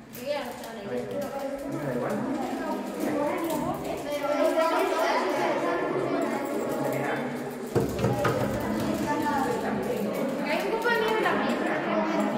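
Many children talking at once: overlapping chatter with no single voice standing out, and a brief thump about eight seconds in.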